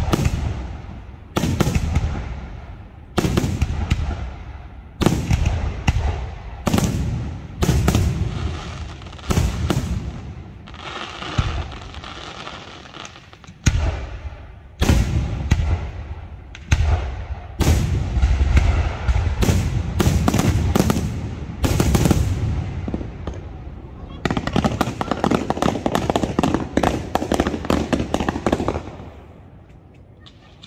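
Aerial firework shells bursting one after another, a sharp bang every second or two, each followed by a low rolling echo. Near the end comes a dense crackle lasting several seconds.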